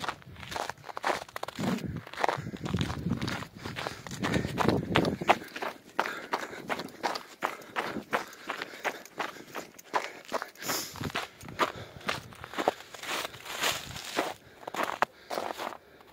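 Footsteps on a trail of thin snow over dead leaves, about two steps a second. A low rumble sits under the steps for the first few seconds.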